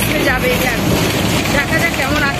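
Bus running, heard from inside the cabin as a steady noise, with a woman talking over it.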